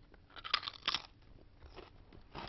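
A potato chip bitten and crunched, with two loud crunches within the first second, then quieter chewing.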